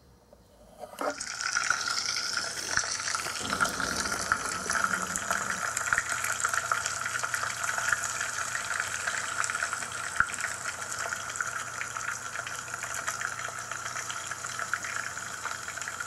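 A Konapun toy pork cutlet fizzing and bubbling in a pot of water as a stand-in for deep-frying. A steady hiss sets in about a second in, when the cutlet goes into the water, and keeps going.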